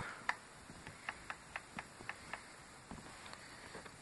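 A series of faint, irregular clicks from the tablet's volume-down button being pressed to step the recovery-menu highlight down.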